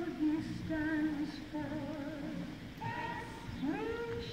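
A woman singing a slow melody in long held notes with vibrato, sliding up into a higher note near the end.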